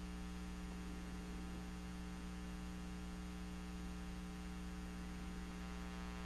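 Faint, steady electrical mains hum with a buzzy row of evenly spaced overtones, unchanging throughout.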